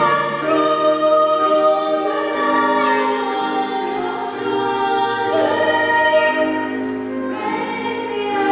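Female voices singing together in a slow choral piece, holding long notes that change every second or so.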